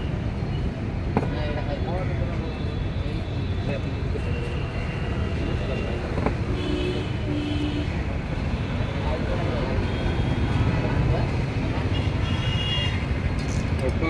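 Roadside street noise: a steady traffic rumble with voices in the background, and a few short high tones near the middle and again near the end.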